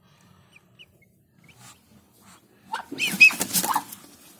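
A few faint short peeps, as from newly hatched Muscovy ducklings, then near the end a loud, noisy burst of animal calls and hiss lasting about a second.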